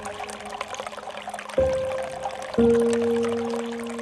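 Water pouring steadily from a bamboo spout into a pool, under slow, soft background music. Single sustained notes are struck about one and a half and two and a half seconds in, each fading slowly.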